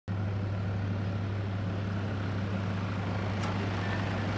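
A four-wheel-drive SUV driving past on a dirt road, its engine and road noise heard over a steady low hum.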